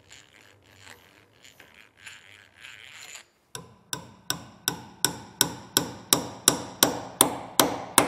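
Brass-faced hammer tapping a soft copper spike into a pre-drilled hardwood axe handle through the eye of the head: about a dozen quick, evenly spaced taps, growing louder, starting a little after three seconds in. Before them, faint scraping.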